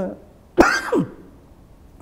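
A man clears his throat once: a short, sudden rasp about half a second in, dropping in pitch as it ends.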